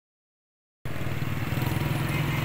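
The sound cuts in abruptly a little under a second in: the small engine of a motorcycle tricycle with a sidecar, running steadily with a low, rapid pulse.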